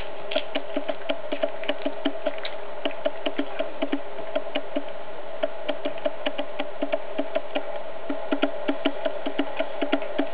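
Cat chewing a whole raw chick, its teeth crunching through the small bones in regular clicks about three a second, with a short pause about five seconds in. A steady buzzing hum runs underneath.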